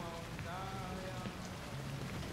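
Steady hissing room ambience of a diner with a low background murmur, and a brief distant voice rising and falling about half a second in.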